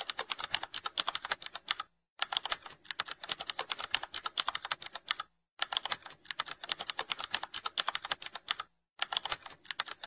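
Computer keyboard typing sound effect: rapid key clicks in runs, with brief pauses about two, five and a half and nine seconds in.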